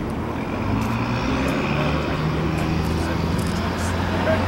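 A steady low engine drone from a passing vehicle, with people talking quietly.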